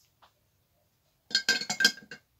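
A quick run of light clinks about a second in: small hard makeup items, such as pencils, brushes and product containers, knocking against one another as they are handled, one with a short ringing note.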